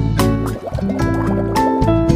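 Instrumental background music: plucked-string notes, guitar-like, over a sustained bass line, with a brief wavering, bubbly passage about half a second in.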